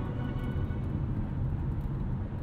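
Steady road and wind noise inside the cabin of a 2020 Mazda CX-5 cruising at highway speed, with music still playing underneath.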